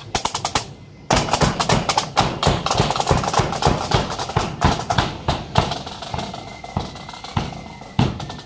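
Marching band's snare drums and bass drum playing a fast, dense street beat. The drumming drops away briefly just before a second in, then comes back loud.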